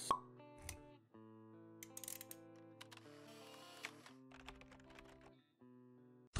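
Soft intro music of held notes, with a sharp pop right at the start, a few light clicks, and a brief airy swish near the middle: sound effects timed to an animated logo intro.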